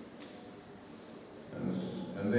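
Quiet room tone for about a second and a half, then a man's voice comes in near the end with a drawn-out murmur that runs on into speech.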